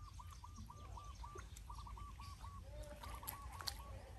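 An animal calling in runs of short, evenly spaced notes, about four a second, with brief pauses between the runs; a couple of lower, drawn-out notes come in the second half.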